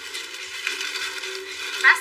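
Rustling of clothing and a plastic bag being handled. A woman's voice starts in near the end.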